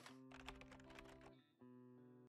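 Very faint intro music sting: soft held notes with a quick run of light clicks, dropping out for a moment near the end.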